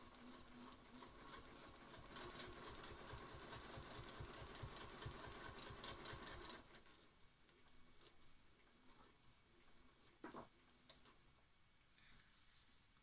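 High-shank domestic sewing machine stitching, a fast even run of needle strokes that stops about six and a half seconds in. It is doing free-motion ruler work along a quilting ruler held against the foot. A single soft knock follows a few seconds later.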